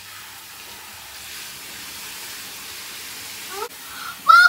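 Handheld shower head spraying water onto hair: a steady hiss of running water. A short rising vocal sound comes in near the end.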